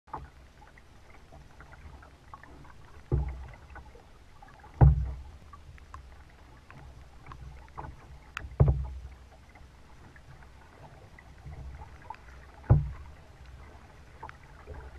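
Kayak paddle strokes: four loud, low thumps a few seconds apart as the blades dip and pull, over a steady low rumble of water against the hull, with light ticks of drips and small splashes in between.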